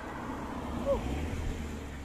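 Street traffic: a car passing on the road, a steady rush of tyre and engine noise with a low rumble that swells about midway.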